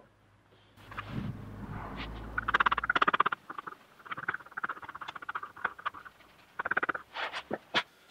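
Wooden stick stirring two-part resin in a small plastic mixing cup, scraping against the cup in stretches of fast, rapid strokes, with a few sharp clicks near the end.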